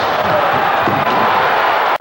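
Loud basketball-arena crowd cheering, a dense steady roar with voices mixed in. It breaks off abruptly near the end at an edit.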